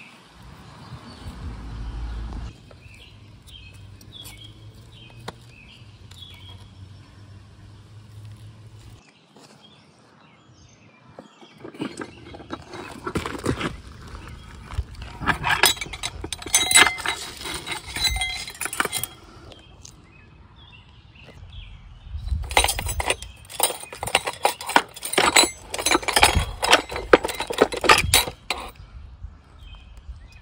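Metal transmission parts clinking and clattering against each other and the aluminium case as a Honda Civic Hybrid CVT is taken apart by hand, in two busy spells of rapid clinks a few seconds apart.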